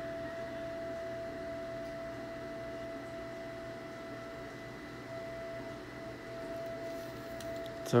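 A faint, steady hum: one high held tone with a few fainter tones alongside it, unchanging throughout.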